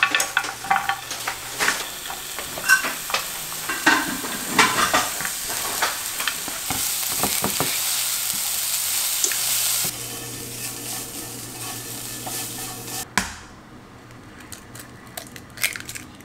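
Sliced red onion sizzling in a hot frying pan, stirred and scraped with a silicone spatula, with many small clicks over a steady hiss. The sizzling cuts off abruptly about three-quarters of the way through.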